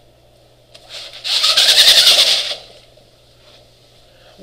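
Spring-roller projection screen retracting, a loud rapid rattling whir lasting about a second and a half, over a faint steady low hum.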